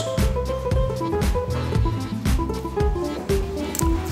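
Background music with a steady drum beat under held instrumental notes.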